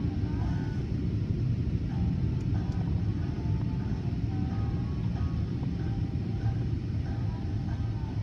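Steady low rumble of automatic car-wash machinery heard from inside a car's cabin.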